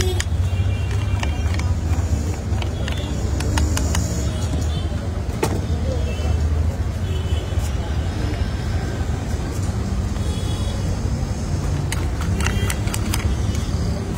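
Knife chopping vegetables on a flat steel counter: sharp taps in short runs, the most near the end, over a steady low rumble of street traffic.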